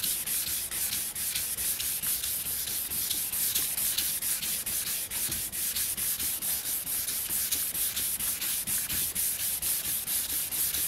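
600-grit wet sandpaper on a sanding-sponge block, rubbed by hand in quick, even back-and-forth strokes over the clear coat of a motorcycle gas tank: a steady, rhythmic hissing scrub. It is wet sanding to knock down orange peel and trash in the clear coat.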